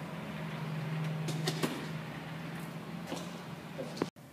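A steady low hum, with a few faint clicks and rustles.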